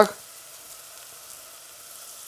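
Onions, garlic and butter frying in oil in a small stainless-steel saucepan: a steady, quiet sizzle with faint crackles.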